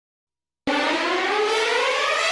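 Silence between two tracks, then about two-thirds of a second in, the next Hindi film song begins abruptly. Its intro is a single sustained tone with many overtones that rises slowly and steadily in pitch.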